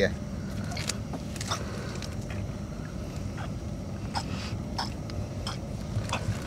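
Monofilament gill net rustling and crackling as a fish is worked free of the mesh by gloved hands: scattered short clicks and crinkles. A steady low hum runs underneath.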